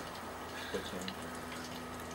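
Hot oil in a small electric deep fryer bubbling and crackling around frying sausages: scattered small crackles over a steady low hum.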